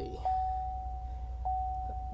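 Dashboard warning chime of a 2014 Chevrolet Silverado with the ignition on: one steady mid-pitched tone that cuts off and starts again about every second, over a low hum.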